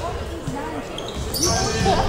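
Basketball bounced on a hardwood gym floor by a player dribbling at the free-throw line before the shot, with voices and laughter in the gym.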